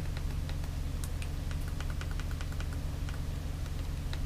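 Short plastic clicks of a Fire TV Stick remote's direction pad and select button being pressed again and again, with a quick even run of about eight clicks a second in the middle.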